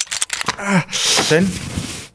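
Men talking, with a few sharp clicks at the start and a breathy hiss in the second half.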